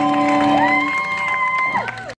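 A rock band's last notes ringing out through guitar amplifiers, with a high whoop that rises about half a second in, holds, and falls away near the end.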